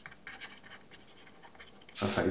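Faint scratching of a pen stylus on a drawing tablet while a word is handwritten in a series of short strokes.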